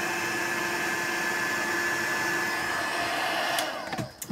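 Small craft embossing heat gun blowing steadily, melting embossing powder on a stamped sentiment. Near the end it is switched off with a click and its fan winds down with a falling whine.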